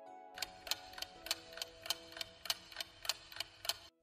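Clock-ticking countdown sound effect, about three even ticks a second, over a soft sustained music chord; it stops abruptly just before the end.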